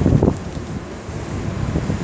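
Wind buffeting the microphone, a low rumble that eases slightly about half a second in.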